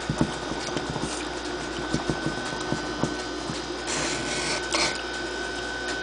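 Felt-tip marker drawn across paper in slow strokes, a dry rubbing scratch that is brightest about four seconds in, over a steady hiss with a thin high hum.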